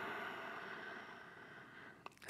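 Quiet room tone: a faint, even hiss that slowly fades to near silence.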